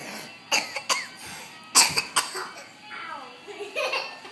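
Music playing quietly, broken by several short, loud vocal outbursts from children, the loudest about two seconds in.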